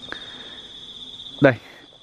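A continuous high-pitched insect trill, holding one steady pitch.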